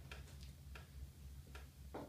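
Faint steady low electrical hum from an amplified electric piano rig, with a few sparse, irregular soft clicks, like keys being touched.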